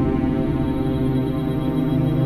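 Electronic ambient music: a steady synthesizer drone of sustained, layered tones, with a low tone swelling near the end.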